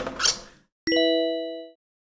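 Logo sting sound effect. A noisy swish fades out in the first half-second, then a single bright, bell-like ding comes in a little under a second in and rings down over almost a second.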